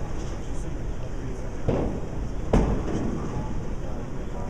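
Bowling alley noise: a steady low rumble of balls rolling down the lanes, broken by two sharp crashes a little under a second apart, the second louder.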